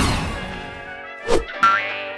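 Cartoon-style sound effects over background music: a whoosh that fades out at the start, then a short thunk and a springy boing about a second and a half in.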